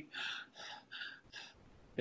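A man breathing audibly into the microphone: about four short, airy breaths in quick succession within the first second and a half, then it goes quiet.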